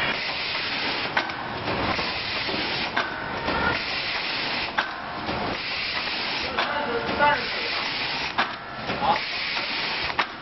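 Automatic horizontal cartoning machine running, with a steady hiss of air and machinery. A sharp click comes about every two seconds as it cycles, with a few brief squeaks between.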